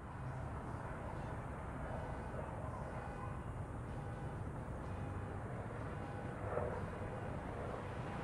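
Steady, low rumble of distant city traffic with a faint hum of street noise.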